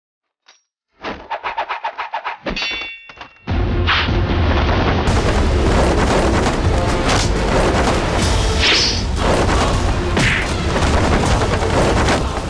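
Action-drama soundtrack: a quick run of sharp clicks and a metallic ring, then, from about three and a half seconds in, a loud, dense mix of music and battle sound effects with a deep rumble.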